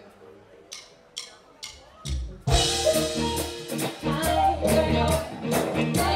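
Four sharp, evenly spaced stick clicks counting in, then about two and a half seconds in the live band starts the song with drum kit and bass.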